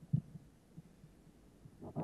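Soft low thumps from a handheld microphone being held close to the mouth, the strongest one just after the start, then a short breath into the microphone near the end.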